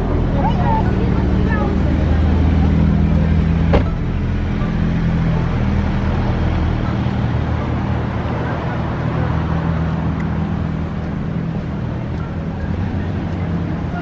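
City street traffic: a motor vehicle engine's steady low hum, shifting a little in pitch a few times, with a single sharp knock about four seconds in.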